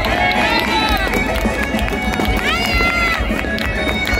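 A dense outdoor crowd shouting and cheering, with high whoops and whistles rising above a steady din, including a prominent rising call about two and a half seconds in. Scattered sharp cracks sound through it.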